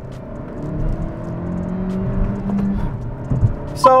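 Honda Civic Si's 1.5-litre turbocharged four-cylinder accelerating hard in sport mode, heard from inside the cabin: the engine note climbs steadily for a couple of seconds, then drops away near the three-second mark with a low thump.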